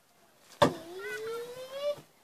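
A knife strikes a hanging box target with one sharp hit about half a second in. A smooth rising whine follows and lasts for over a second.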